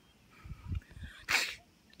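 A single short, sharp sneeze about a second and a half in.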